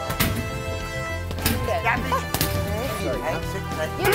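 Background music runs under a few sharp smacks of boxing gloves hitting a hanging punch bag, with voices calling out near the end.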